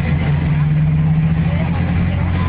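Bus diesel engine running steadily, a low, even hum with a muffled, thin sound typical of a mobile phone recording.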